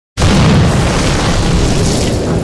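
Loud, steady rumble of wind buffeting the microphone, starting abruptly just after the start.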